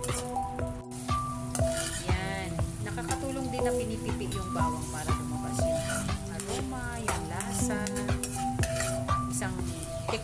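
Minced garlic sizzling in hot oil in a pan, with a metal spoon stirring and scraping against the pan in repeated clicks. Background music with steady held notes plays underneath.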